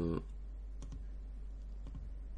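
Two computer mouse clicks about a second apart, over a steady low electrical hum.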